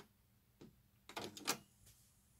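Aiwa AD-F770 cassette deck's tape transport mechanism engaging as its automatic tape calibration starts: a light button click, then a cluster of mechanical clicks and clunks about a second in, the last the loudest.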